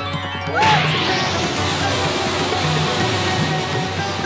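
Dramatic background music with a sudden crash-like sound effect about half a second in, followed by a sustained rushing noise under the music, scored for a supernatural power being unleashed.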